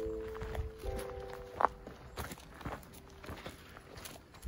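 Footsteps on a dirt path strewn with dry leaves, one sharper step about a second and a half in. Background music plays held chords under them for the first couple of seconds, then fades.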